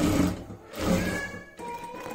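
Sewing machine running a straight stitch in two short runs, each under a second, back to back.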